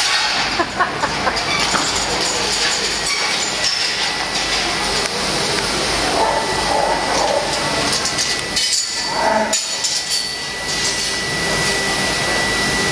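Steel sheep-yard panels clinking and knocking as sheep are pushed against them and up into a race, over a steady noisy hall background. The knocks bunch together about two-thirds of the way in, and a steady high tone joins in the last few seconds.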